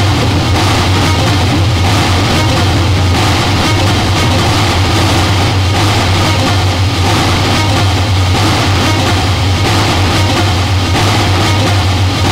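Harsh noise music: a dense, unbroken wall of distorted noise over a loud, steady low hum, with no beat or pauses.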